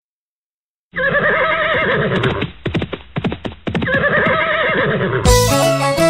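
After about a second of silence, a horse whinnies, a quick run of hoof clip-clops follows, and a horse whinnies again. Band music comes back in near the end.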